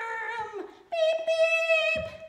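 A woman's voice making a pretend car-engine hum, held as two long notes: the first fades about half a second in, and after a short break a higher, steadier one starts about a second in.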